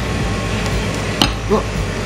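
A metal spoon clicks once against the hard shell of a tiramisu cup, over the steady low hum of air conditioning.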